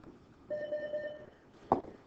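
A single steady electronic beep, one held tone lasting almost a second, then a sharp click just before the end.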